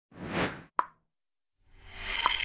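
Animated-intro sound effects: a short swelling whoosh, then a single sharp pop, then a rising swell near the end.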